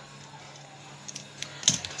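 A few small plastic clicks in the second half as the lens cap is unclipped and pulled off a Nikon Coolpix L830 camera's lens.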